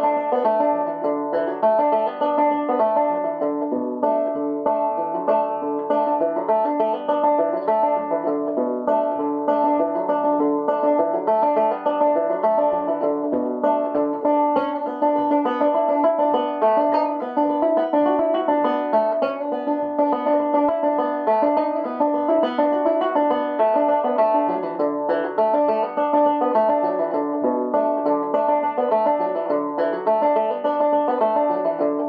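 Solo five-string banjo in dBEAB tuning, picked two-finger thumb-lead style: a steady stream of plucked notes over strings that keep ringing, with no singing.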